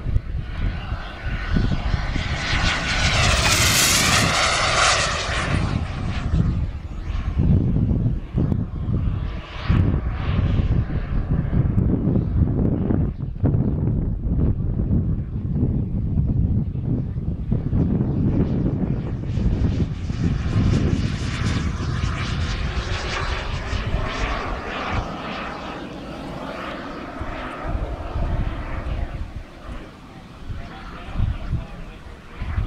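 Turbine-powered RC jet (King Cat) making fast passes overhead: a loud rushing turbine whine that swells and sweeps down in pitch as the jet goes by, twice.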